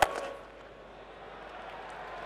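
Cricket bat striking the ball once in a big swing, a sharp crack, followed by stadium crowd noise that slowly swells as the ball flies away.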